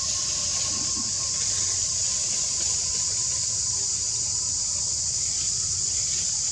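Steady high-pitched drone of a cicada chorus in the forest, unchanging throughout, with a fainter thin whine lower in pitch that fades out near the end.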